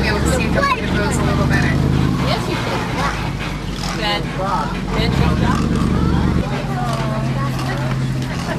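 The engine of an open-sided safari tour truck running at low speed, its hum shifting pitch a few times, under children's voices and passenger chatter.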